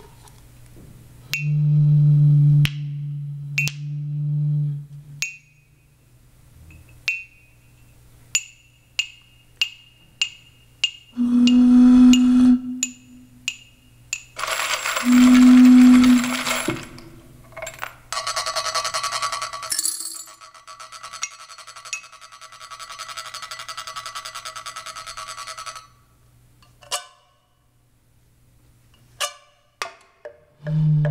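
Experimental music played on homemade instruments built from found objects. Low held tones give way to a run of light metallic clinks, about two a second, each ringing briefly. Short low tones and a hissing burst follow, then a dense buzzing, rattling texture, with a few scattered clicks near the end.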